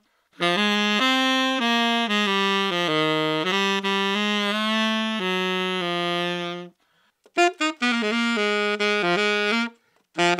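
Tenor saxophone playing a phrase of sustained, stepping notes, heard through a Shure SM57 dynamic microphone, whose sound the player calls a little nasal and lacking warmth. The phrase stops just before seven seconds, and after a short pause a second saxophone phrase follows.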